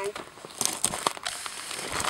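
Dry yucca leaves and desert brush crackling and rustling in short, irregular clicks as they are pushed through and brushed against, with the crunch of steps on gravel.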